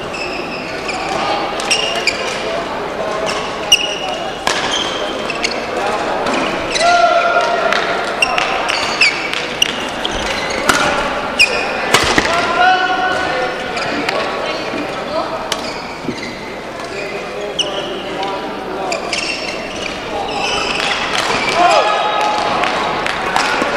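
Echoing badminton-hall sound: sharp racket hits on shuttlecocks, a few louder than the rest, short high shoe squeaks on the court floor, and voices in the background.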